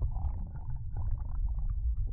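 Audio from a camera held underwater: a deep, muffled rumble of water moving against the camera, with scattered small clicks and ticks.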